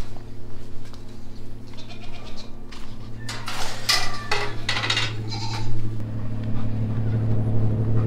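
Goats bleating in several short calls, over a steady low hum that grows louder in the second half.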